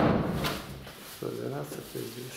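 A sudden loud thump right at the start that dies away over about half a second, followed a moment later by a few murmured words.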